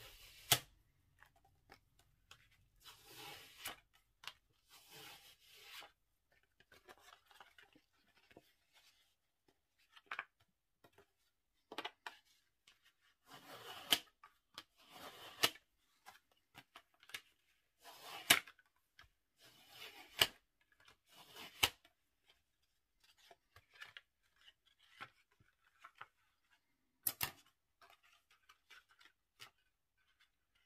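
A bone folder rubbed firmly along the folds of cardstock panels to burnish them: a series of scraping strokes, with paper handling and a few sharp clicks between them.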